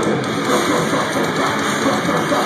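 Death metal band playing live, recorded from the crowd: loud, distorted electric guitars, bass and drums in a dense, steady wall of sound.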